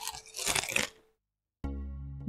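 Crunching of a carrot being bitten and chewed, a few noisy crunches in the first second, used as a sound effect for the hare eating. Then a short silence, and soft background music comes in near the end.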